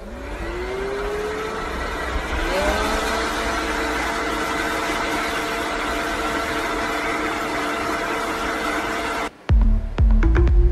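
Leaf blower spinning up with a rising whine, rising again about two and a half seconds in, then running steadily until it cuts off suddenly near the end.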